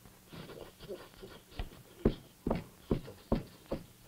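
A run of short, sharp knocks, about two a second, with a faint hiss in the first second.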